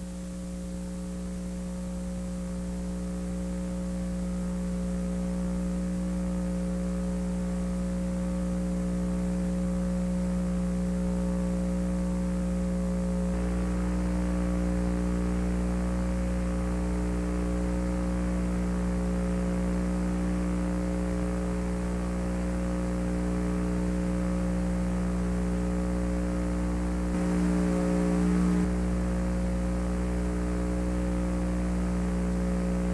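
Steady electrical mains hum made of several constant pitched tones, with no other sound over it. It grows louder over the first few seconds, holds level, and swells briefly near the end.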